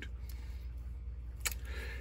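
Low steady room hum with a single short, light click about one and a half seconds in, as the small revolver is turned over in the hands.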